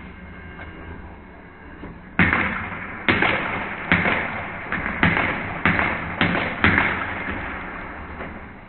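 Modified Nerf Elite Hyperfire, a flywheel dart blaster, firing a string of darts about two seconds in. There are about eight sharp shots over some five seconds, irregularly spaced, with its motors whirring between them before winding down.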